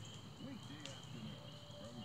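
Faint, steady high-pitched chirring of insects, with one brief higher chirp a little before the middle.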